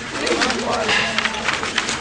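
People talking indistinctly, with no clear words.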